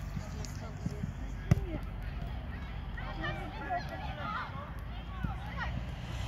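A single sharp thud of a football being kicked about a second and a half in, with children's distant shouts and calls across the pitch after it.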